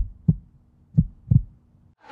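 Heartbeat sound effect: two double low thumps, about a second apart.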